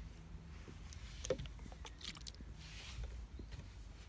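Hand-held trigger spray bottle of alcohol being worked against a car's paint: sharp handling clicks about a second in and again at two seconds, then a short spray hiss near three seconds.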